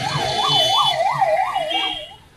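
A siren wailing up and down in pitch, about three sweeps a second.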